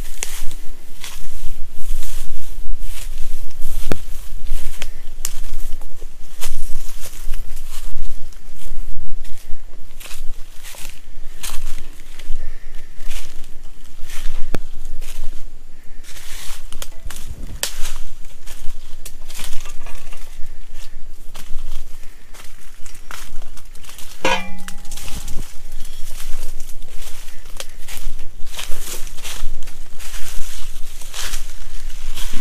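Close-up footsteps crunching through dry grass, leaves and undergrowth, irregular and loud, with rustling vegetation. A single sharp click with a brief ring sounds about three-quarters of the way through.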